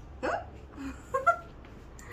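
Short, high excited vocal sounds from a person: a quick rising squeal about a quarter second in, then a few brief yelps or giggles around the one-second mark.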